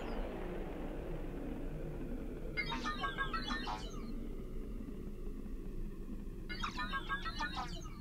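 Two brief bursts of quick, high bird-like chirping, about four seconds apart, over a faint steady low rumble.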